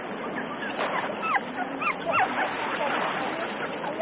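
Puppies whimpering and yelping: a run of short, high whines, clustered about one to two seconds in, over a steady rush of river water.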